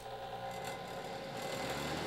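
Duct Blaster duct-leakage test fan running and pressurizing the ductwork: a steady mechanical hum with a few steady tones, growing gradually louder.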